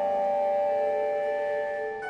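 A contemporary chamber ensemble of flute, clarinet, percussion, guzheng and electronics plays several sustained tones layered together. A new, lower held tone enters about half a second in.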